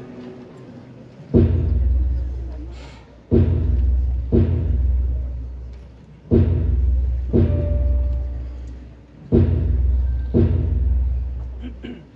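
A deep drum struck in a slow, steady pattern of seven strokes, alternating gaps of about two seconds and one second, each stroke booming low and fading out before the next.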